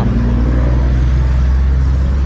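Steady low hum of a motor vehicle engine running.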